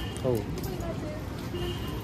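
Street voices over general street noise, with a few light metallic clinks of hanging costume necklaces being handled.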